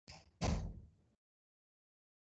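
Two short knocks close together, a light one followed by a louder, heavier thump that dies away within about a second.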